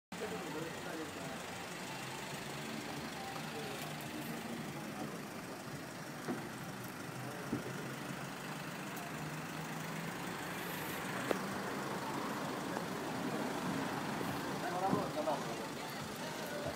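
Street ambience: a steady hum of road traffic with faint voices, a few light clicks, and voices growing clearer near the end.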